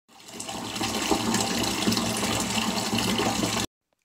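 Bathtub tap running, a stream of water pouring into a full tub of bathwater. It cuts off suddenly near the end.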